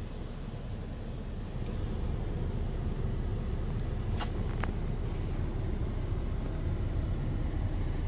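Steady low rumble inside a car, getting a little louder about a second and a half in, with two faint clicks a little after four seconds.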